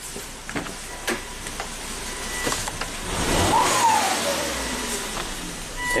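Volvo S60's turbocharged five-cylinder engine idling, then blipped once about three seconds in, its note rising briefly and falling back to idle. It is running with cylinder one not firing: that cylinder's spark plug is grounded and a pressure transducer sits in its place, on an engine suspected of internal mechanical damage.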